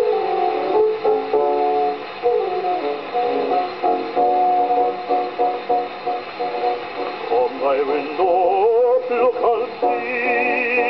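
A 78 rpm record of a male ballad singer with accompaniment, played on a gramophone, its sound cut off above the upper treble. Sustained accompaniment chords run for most of the stretch, then the male voice comes in with a wide vibrato near the end.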